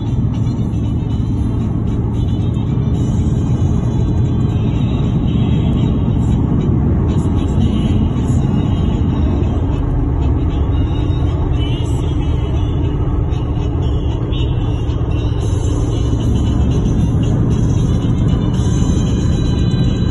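Steady rumble of road and wind noise from a moving car, with music playing over it.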